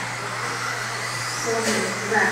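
Electric 2WD modified RC buggies running around a dirt track: a steady whirring haze of motors and tyres over a low, steady hum.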